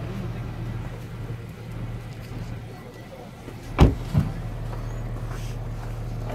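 A car door shut with a solid thump a little past halfway through, followed by a smaller knock, over a steady low hum.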